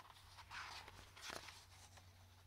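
Faint rustle of a picture book's paper page being handled by fingers as it is about to be turned, over a low steady hum.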